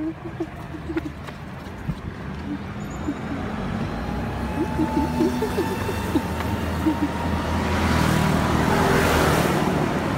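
Road traffic: a steady rumble of engines and tyres that grows louder over several seconds, peaking near the end as a vehicle passes close by.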